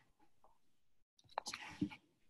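Near silence, then about a second and a half in, a brief soft whispered voice.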